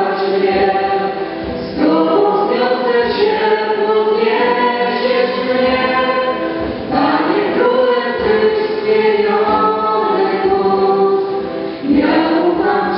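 Many voices singing a slow worship song together in long sustained phrases, with brief breaks between phrases roughly every five seconds.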